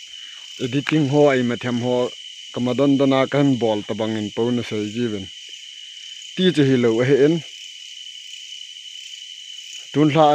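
A steady night chorus of crickets, holding one constant high tone throughout. Over it a man's voice speaks in three stretches, with a pause near the end.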